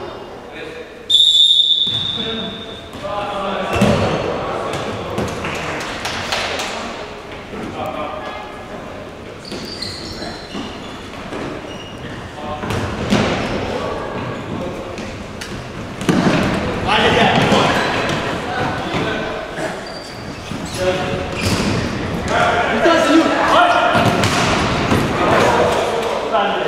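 A referee's whistle, one short blast about a second in, then futsal play in a large echoing hall: the ball being kicked and bouncing on the court floor, with players shouting.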